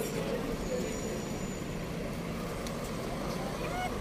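City street traffic: a steady hum of cars and buses passing, with faint voices of passers-by.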